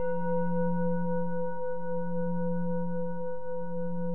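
A singing bowl ringing on after a single strike. A strong low hum sits under several higher overtones, and the low tone wavers slowly as it sustains.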